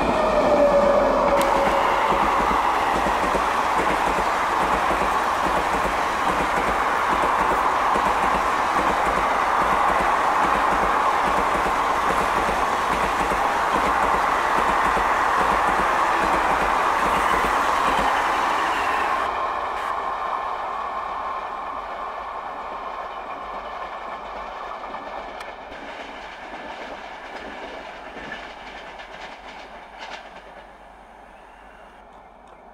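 Long passenger train hauled by a WAP7 electric locomotive passing close at speed: a loud, steady rush of steel wheels on rail with clickety-clack from the coaches. About two-thirds through, the sound changes abruptly and a train's rumble fades as it moves away.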